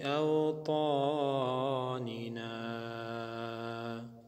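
A man chanting an Arabic supplication (dua) in a slow melodic recitation, with wavering, drawn-out notes over a steady low hum. About halfway through he settles on one long held note.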